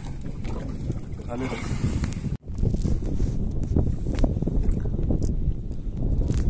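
Wind buffeting the microphone on an open boat, a steady low rumble with a few scattered clicks. The sound cuts out abruptly for an instant about two and a half seconds in, then the same rumble resumes.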